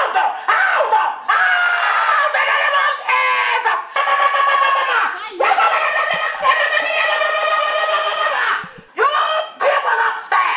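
A woman's voice shouting through a megaphone in long, drawn-out calls that sound thin and tinny with no low end, with a short break near the end.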